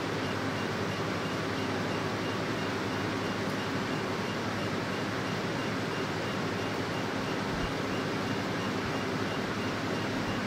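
Diode laser hair removal machine running with a steady fan-like hum from its cooling system. Faint high beeps repeat about three times a second, in step with the laser pulses firing at the 3 Hz setting as the handpiece slides over the skin.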